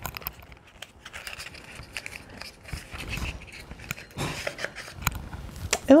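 Plastic packaging of a lip crayon being worked open by hand: irregular crinkling and rustling with many small sharp clicks.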